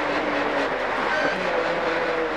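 Mitsubishi Lancer N4 rally car's turbocharged four-cylinder engine heard from inside the cabin, its note falling off as the car slows hard, then stepping up to a higher pitch about one and a half seconds in, as on a downshift. Steady road and tyre noise runs underneath.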